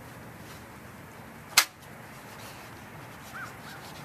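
A single sharp, loud click about a second and a half in, with a brief ringing tail, followed near the end by three or four faint, short, rising-and-falling chirps.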